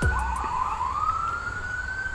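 A siren wailing: a single tone rising slowly in pitch.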